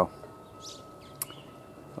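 Quiet outdoor background with a few faint, brief bird chirps and one sharp click a little past halfway.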